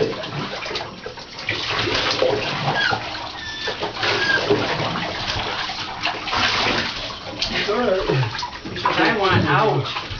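Bathwater sloshing and splashing in a tub as chow chow puppies are washed by hand.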